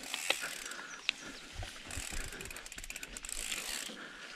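Mountain bike freewheel hub ticking rapidly as the rider coasts, over a steady hiss of tyres on the trail, with a couple of sharp clicks in the first second or so.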